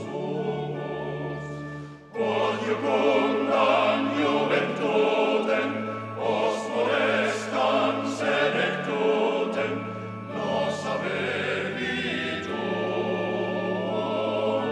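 Choir singing the university hymn over sustained instrumental accompaniment. The singing drops back, then comes in louder about two seconds in and carries on in phrases.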